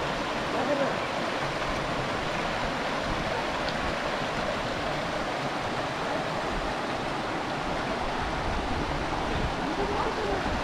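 Shallow rocky stream running over stones and small riffles: a steady, even wash of water.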